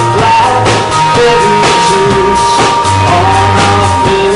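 Live rock band playing loud and steady: electric guitar, bass guitar and drum kit, with regular drum hits keeping the beat.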